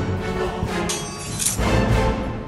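Orchestral background music with two sharp percussive hits in the middle.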